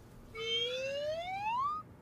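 Cartoon sound effect: a whistle-like tone gliding steadily upward in pitch for about a second and a half, marking the balloon floating away.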